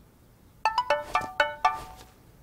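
A cartoon tablet's ringtone for an incoming call: a quick melody of about six bright chiming notes, starting just over half a second in.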